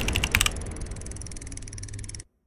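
Typing-style click sound effect for an animated logo's text: sharp clicks in quick succession, about a dozen a second, for the first half second, then a fainter, faster, even ticking.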